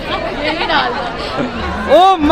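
Several women's voices talking over one another: lively chatter.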